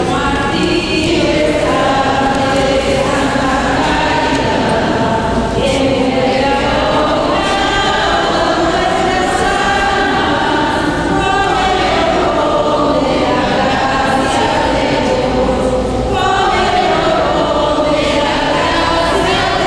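A church congregation singing together, in long sustained phrases with short breaks about every five to six seconds.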